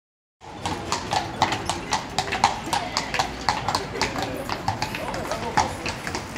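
Hooves of a pair of carriage horses clip-clopping on cobblestones, a quick irregular run of strikes starting about half a second in, with voices in the background.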